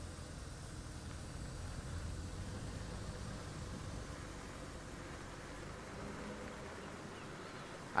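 Safari game-drive vehicle's engine running at a low, steady rumble as it drives slowly forward along a sandy track.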